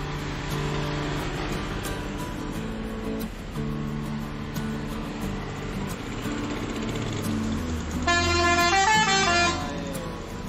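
Guitar background music, then about eight seconds in the Mercedes-Benz 1626 bus sounds its multi-tone musical 'telolet' air horn, a short run of shifting notes lasting about a second and a half, over the low rumble of its engine as it pulls away.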